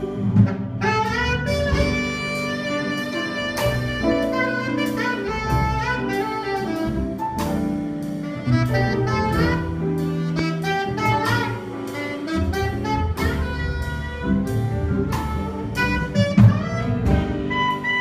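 Live small jazz ensemble playing: a saxophone carries the melody over archtop guitar, upright bass and drum kit, with cymbal and drum strokes through it.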